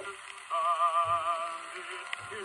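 Early acoustic recording of a male tenor singing a ballad with accompaniment. After a brief lull, a held note with wide vibrato begins about half a second in and eases off near the end.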